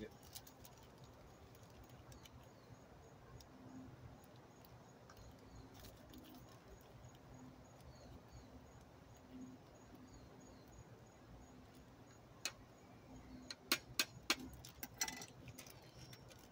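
Mostly quiet. In the last few seconds a zip-top plastic bag of diatomaceous earth crinkles and rustles, with several sharp clicks, as it is handled and pulled open.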